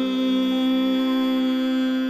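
Title theme music holding one long steady note.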